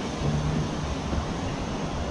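Steady low background noise, a rumbling hiss with no distinct events, and a faint low hum briefly in the first half.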